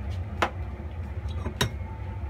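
Steady low hum of an induction cooktop running, with two sharp clicks about half a second and a second and a half in.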